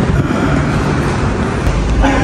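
Steady low rumbling noise with no distinct knocks or clicks.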